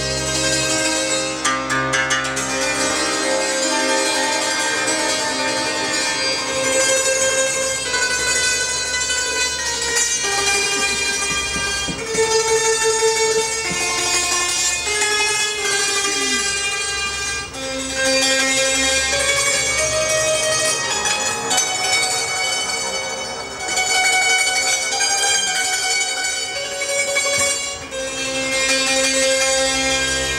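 Appenzell hackbrett (hammered dulcimer) playing an instrumental passage of ringing struck-string notes, with double bass notes underneath, heaviest at the start and near the end.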